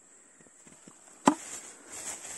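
Faint rustling of grass and undergrowth being pushed through, with one sharp crack a little over a second in.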